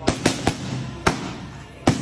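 Boxing gloves striking focus mitts in a quick combination: five sharp slaps, three within the first half second, one about a second in and another near the end.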